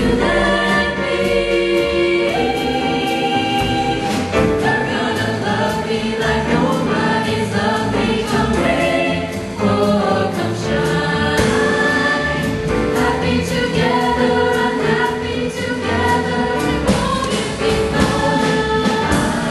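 Women's vocal ensemble singing a jazz standard in harmony through microphones, the voices sustained and continuous.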